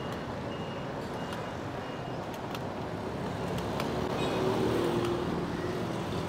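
Street traffic: a steady hum of passing motorcycle, auto-rickshaw and car engines, growing a little louder about four seconds in as a vehicle passes close. A few faint short high beeps sound in the first seconds.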